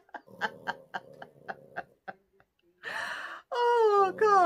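A woman laughing hard: a run of short breathy laugh pulses, about four a second. After a brief pause comes a long gasping breath in, near the three-second mark.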